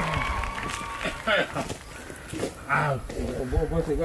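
A few short, scattered snatches of people's voices, quieter than the talk around them, over low knocks and rumble.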